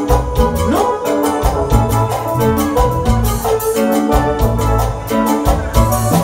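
Live grupera band music: an organ-toned electronic keyboard over bass, drums and electric guitar, with a steady beat.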